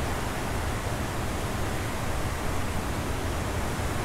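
Torrential rain falling, a steady even hiss with no breaks.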